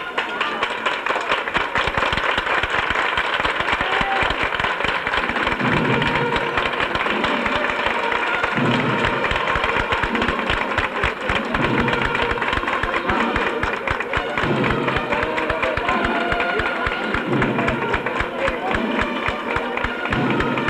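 Processional band music over crowd noise, with a dense crackle throughout and low notes changing about every three seconds.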